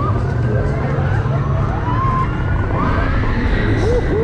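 Steady low rumble of wind and machinery on a seat-mounted action camera aboard a KMG Inversion swing ride in motion. Over it, riders' voices call out in several long cries that rise and fall in pitch.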